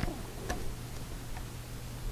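Quiet room tone with a low steady hum and a few faint, scattered clicks.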